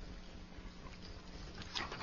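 Quiet room tone in a pause between speakers: a faint steady hum over low background noise, with a few faint short sounds near the end.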